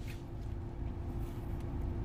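Steady low rumble of a car interior with a faint constant hum. A soft crunch of a cookie being bitten comes near the end.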